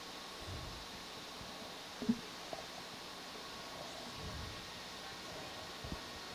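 Steady low hiss of background noise, with a few faint low rumbles and a short click about two seconds in.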